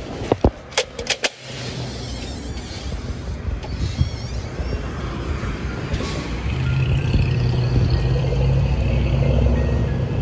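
City street traffic, cars passing at an intersection, with background music playing over it. A few sharp clicks come in the first second or so, and the sound grows louder and fuller from about six and a half seconds in.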